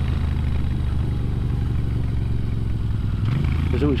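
Moto Guzzi V7's air-cooled V-twin running steadily under way, its pitch rising briefly a little past three seconds in.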